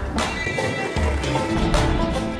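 Background music with drums, a pulsing bass and held melodic tones.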